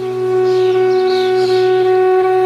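Flute music: a flute holds one long, steady note over a low sustained background tone.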